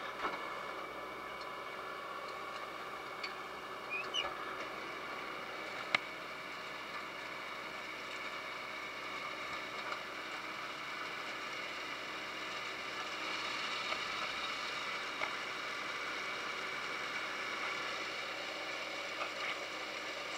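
Potato harvester's hopper and conveyor running steadily, a machine hum with several steady whining tones. A few sharp knocks of potatoes tumbling against the metal, the loudest about six seconds in.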